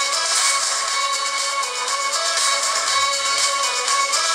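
Music played at high volume through the Xiaomi Mi4c smartphone's loudspeaker, thin-sounding with almost no bass.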